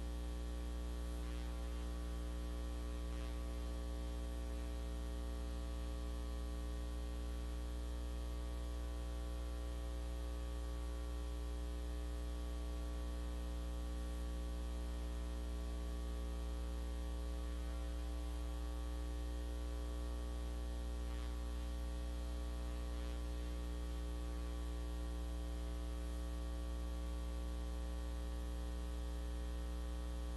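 Steady electrical mains hum on the audio feed: a low buzz with a stack of even overtones, unchanging throughout.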